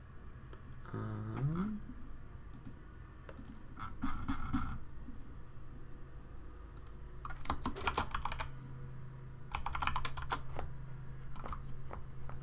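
Typing on a computer keyboard in several short bursts of rapid keystrokes separated by pauses.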